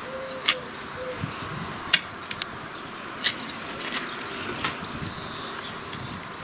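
A small short-handled spade digging into loose soil, with about six sharp scraping strikes of the blade into the earth spread irregularly across a few seconds.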